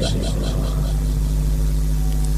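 A steady low hum with several even, unchanging pitches.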